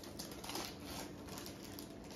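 Foil chip pouches being torn open and handled, giving quiet, irregular crinkling.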